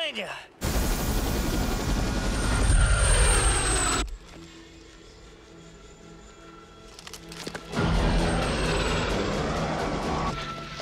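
Helicopter passing close by: a loud rush of engine and rotor noise with a high turbine whine that falls in pitch, cut off suddenly about four seconds in and starting again near the end, with orchestral film music under it.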